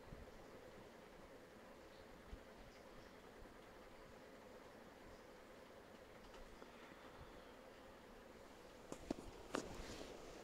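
Near silence: faint steady background noise with a low hum, broken by a few sharp clicks near the end.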